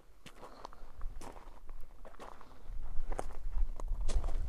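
Footsteps crunching on loose gravel and rock, an uneven run of steps. A low rumble joins in about two-thirds of the way through.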